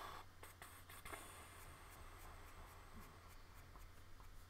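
Faint graphite pencil strokes scratching on drawing paper, a few short ticks at first, then steadier scratching, over a low steady hum.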